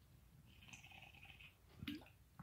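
Faint sounds of a man drinking from a tipped-up glass, mostly near silence, with a short sharp sound, a gulp or the glass, just before the end.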